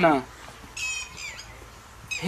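A bird giving two short, high, harsh squawks about a second in, the second call falling in pitch.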